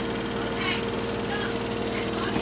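LG direct-drive washing machine on its spin cycle, its motor giving a steady whine, with two faint short high chirps about a second apart.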